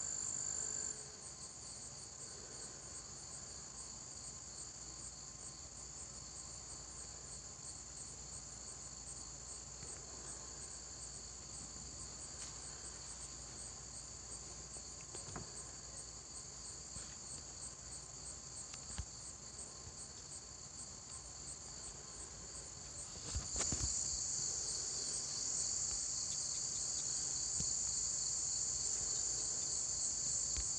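A chorus of insects trilling steadily: a high, thin drone with fine rapid pulses. A brief soft bump comes about 23 seconds in, and the insects are louder after it.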